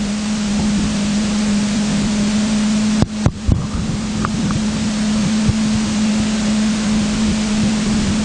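Steady rushing noise with a constant low hum, broken by two brief knocks about three seconds in.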